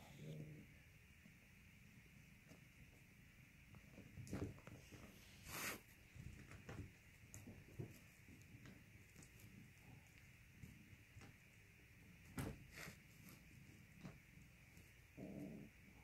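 Near silence with faint, scattered sounds of kittens at play: a few soft taps and scuffles, and low kitten growling.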